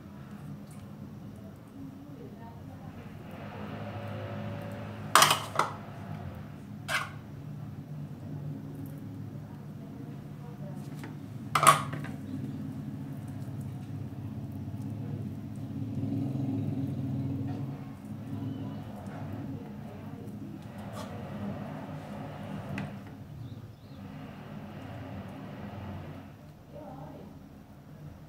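Cutlery clinking against a ceramic plate while a sandwich is put together: three sharp clinks close together, then one more a few seconds later, over a low background hum.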